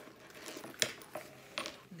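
A few light metallic clicks and clinks, the sharpest a little under a second in, from a crossbody bag's metal zipper pulls and hardware knocking as the bag is handled.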